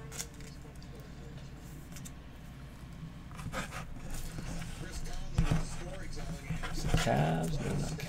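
Indistinct low talking, mostly in the second half, over a steady low hum, with a few short soft clicks.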